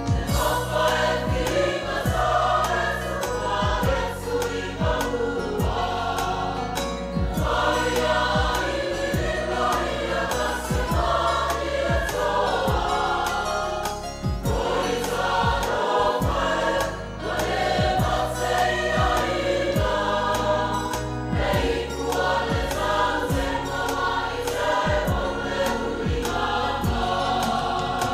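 A large mixed choir of young men and women singing a gospel song together in harmony.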